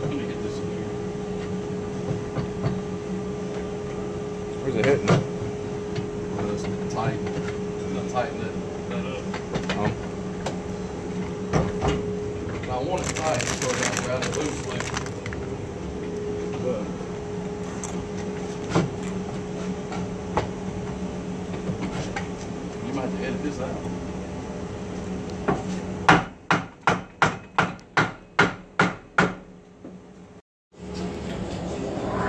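Shop dust collector running with a steady hum, with scattered light clicks and handling noises. Near the end comes a quick run of about nine sharp hammer-like knocks, roughly three a second.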